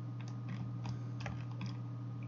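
About eight faint, scattered clicks from working a computer, over a steady low hum.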